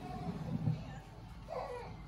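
A toddler's short babbling vocalization, with no clear words, about a second and a half in. Before it comes a low rumble of handling noise.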